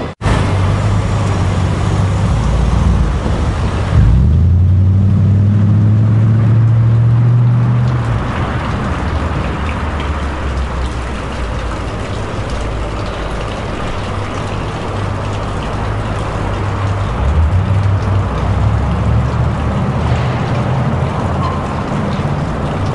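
City street traffic: motor vehicle engines running close by, with a heavy engine's low steady drone loudest from about four to eight seconds in.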